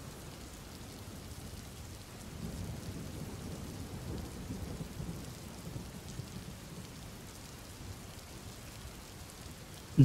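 Steady rain from a background rain-sound track, with a low rumble of thunder that rises about two seconds in and dies away a few seconds later.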